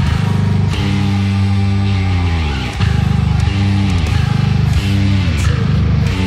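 Six-string Dingwall NG3 bass through a Darkglass Adam preamp, playing a heavy death metal part over the song's recording: short runs of fast-picked low notes alternating with held notes that slide down in pitch.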